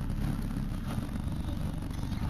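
Off-road 4x4's engine running at low revs, heard from inside the cab as a steady low rumble.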